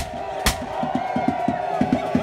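Live folk band music: a steady held note over a quick, regular drum beat, with two sharp cracks about half a second apart near the start.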